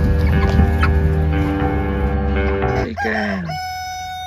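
Background music for the first three seconds, then a rooster crows: a cock-a-doodle-doo whose opening notes fall in pitch before a long held final note.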